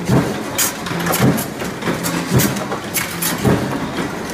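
Mechanical punch presses stamping sheet-steel drawer panels: sharp metallic press strikes about once or twice a second over the steady hum of the presses' motors and flywheels.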